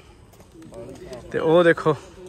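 Pigeons cooing faintly in the quieter first part, with a short burst of a man's voice about two-thirds of the way in.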